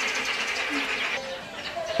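Birds calling in the background: a steady high chirping that fades out a little past halfway, with one or two faint short low notes.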